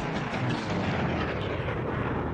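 A dense, noisy rumble with scattered sharp cracks, a sound effect in an intro soundtrack, taking over from the music.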